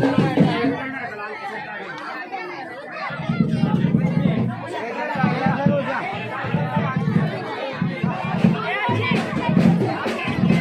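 Crowd chatter over loud dance music played through a DJ sound system; the music's bass beat is missing for the first few seconds and comes back in pulses about three seconds in.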